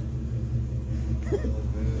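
A car engine idling: a steady low rumble.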